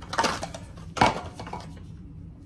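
Small cardboard carton handled by gloved hands: rustling and scraping, then one sharp crack about a second in.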